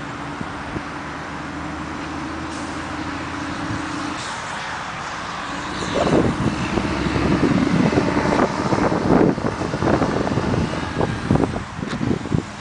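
Steady road-traffic noise with a low engine hum, then from about halfway irregular gusts of wind buffet the microphone and grow louder than the traffic.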